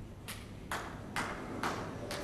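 Footsteps on the indoor bowls green: a regular series of soft taps, about two a second, beginning shortly after the start.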